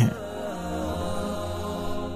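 Background music bed: a chant-like drone holding steady, sustained notes over a low hum.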